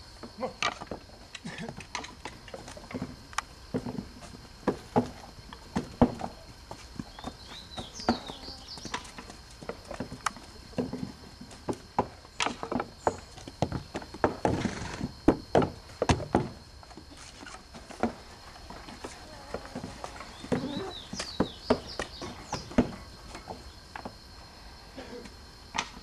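Irregular wooden knocks and thuds of bricks being moulded by hand: clay thrown into wooden moulds and the moulds knocked on a sanded wooden bench. Faint bird chirps come in twice.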